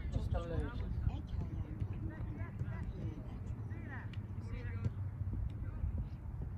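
Scattered distant shouts and calls of players and coaches on a football pitch, over a steady low rumble, with a few faint clicks.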